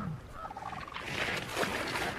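A bison gives a low, falling grunt at the start; from about a second in, louder splashing and churning of icy water takes over. A rapid, pulsing trill repeats faintly behind it.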